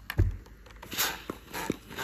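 Clothes iron set down and pushed over a fabric strip on a wool pressing mat: a low thump just after the start, a short hiss about a second in, then a few light knocks.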